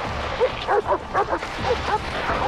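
Team of sled dogs barking and yipping as they pull a sled: a quick run of short, sharp barks that starts about half a second in.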